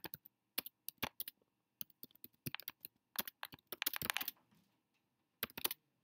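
Computer keyboard typing: irregular key clicks as a sentence is typed, with a quick run of keystrokes about three to four seconds in and a short pause before a last few.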